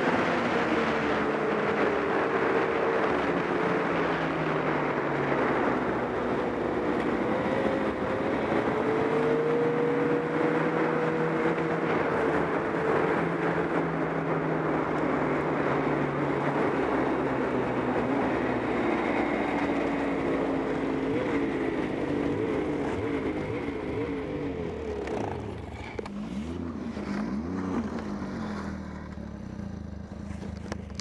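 Snowmobile engine running at cruising speed, its pitch drifting up and down a little with the throttle, over a steady rush of track and wind noise. Near the end it eases off and drops toward idle as the sled slows to a stop.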